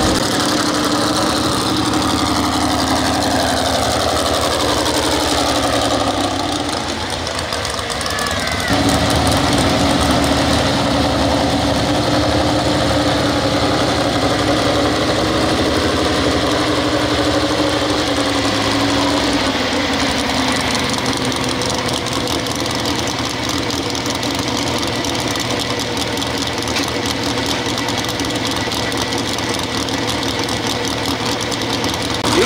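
Pro stock 4x4 pulling truck's engine running, its pitch falling over the first few seconds. A cut about nine seconds in, then a steady engine drone.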